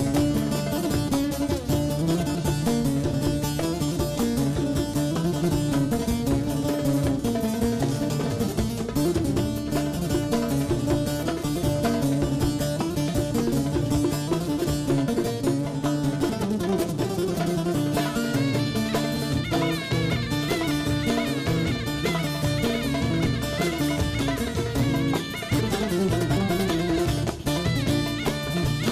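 Turkish folk instrumental: a bağlama strumming over a steady drum beat and bass line. About two-thirds of the way through, a reed wind instrument comes in on top with a wavering, ornamented melody.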